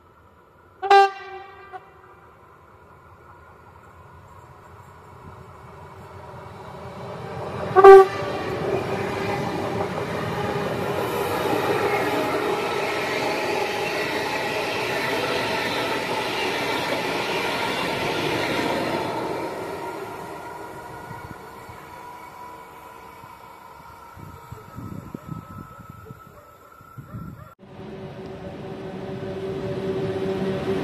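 An electric multiple-unit passenger train sounds two short horn blasts, one about a second in and a louder one about eight seconds in. It then passes close by with a rising and then fading rush of wheels on rails. Near the end a different sound takes over: an electric freight locomotive approaching, its hum growing louder.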